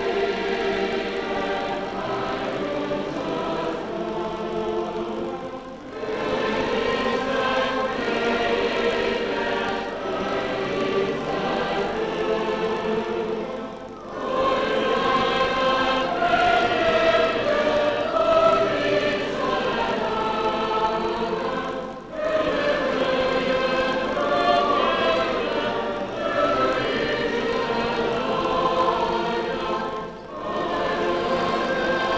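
A choir singing a sacred song in phrases of about eight seconds, each followed by a brief pause for breath.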